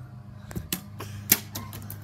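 A run of irregular sharp clicks and knocks starting about half a second in, the loudest about a second and a third in, over a steady low hum.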